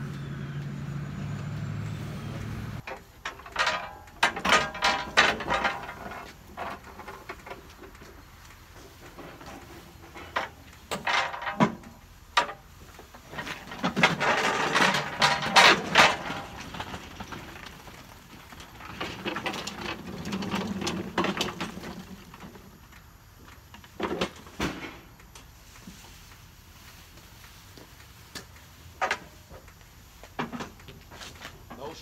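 A steady low machine hum that cuts off about three seconds in, then repeated bursts of metal rattling and clattering from wheeled metal cage carts and a hand truck being moved over pavement, the loudest about halfway through.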